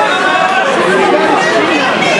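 Crowd of spectators in a hall, many voices talking and shouting over one another with no single clear speaker.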